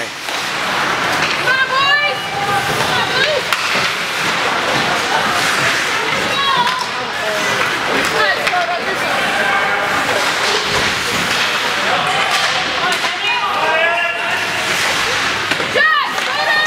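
Game noise at an indoor ice hockey rink: a steady din of play and crowd, with voices calling out a few times, around two seconds in, near the middle and again near the end.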